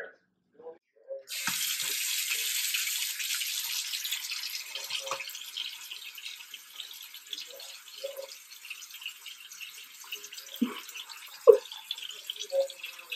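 Bathroom sink faucet running, a steady stream of water splashing into the basin. It starts abruptly about a second in and eases slightly in loudness after that.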